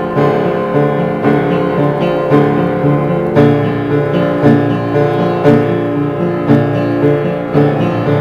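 Yamaha piano playing a slow, dark original piece, hands on the keys: chords struck about once a second over low bass notes, each left to ring into the next.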